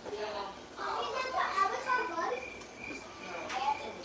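Children's voices talking and playing in the room, not clear enough to make out words.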